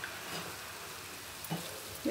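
Grated coconut and jaggery mixture cooking in an aluminium pan, giving a faint, steady sizzle while a wooden spatula stirs it, with a soft scrape about one and a half seconds in.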